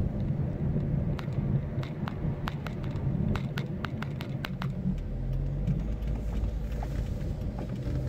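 Car engine and road rumble heard inside the cabin while driving at low city speed. From about a second in to about five seconds in there is a run of light, sharp clicks, a few per second.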